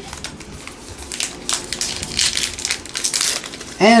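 Plastic trading-card pack wrapper crinkling and crackling in the hands as it is pulled open, in an irregular run of rustles.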